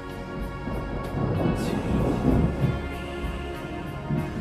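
A rumble of thunder swells about a second in and eases near the end, laid over soft, sustained instrumental meditation music.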